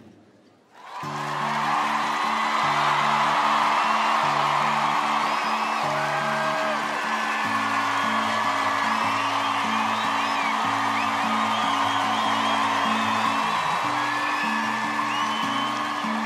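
Large arena audience cheering, with whoops and whistles, starting suddenly about a second in and holding steady. Underneath runs a background music bed of long held low chords that change slowly.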